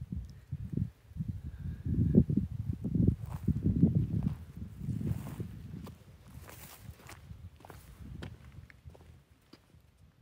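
Footsteps of a person walking while filming: a run of irregular low thuds, loudest in the first half and tapering off after about six seconds.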